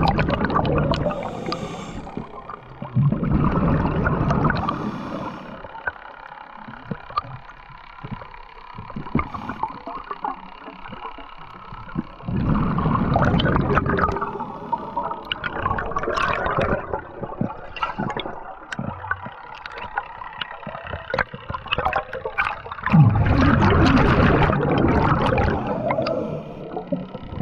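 A diver's breathing heard underwater: loud rushing, bubbling bursts of one to two seconds, in pairs at the start and about halfway through and once more near the end, with quieter gurgling water between.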